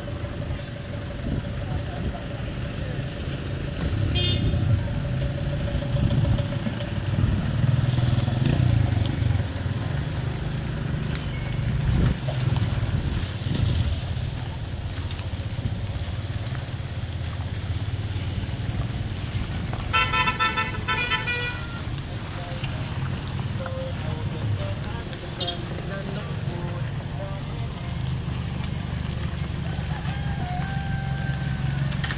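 Road traffic in a slow queue: car engines running in a steady low rumble as vehicles creep past. A car horn sounds for about a second and a half around two-thirds of the way through, with a shorter toot early on.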